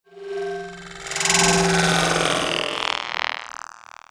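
Synthesized intro sting for an animated logo: a few held tones that swell into a loud whooshing surge about a second in, then fade out.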